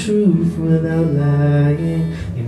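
A male singer's voice holding long wordless notes in a live song, the pitch stepping down about a third of a second in and then sustained low.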